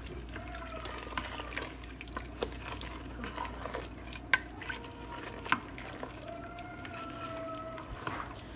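A wooden spoon stirring beans and water in an Instant Pot's stainless steel inner pot: liquid sloshing, with scattered light clicks.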